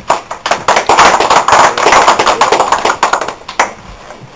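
A small group clapping: dense hand claps that swell within the first second, keep up for about three seconds and then thin out and stop shortly before the end.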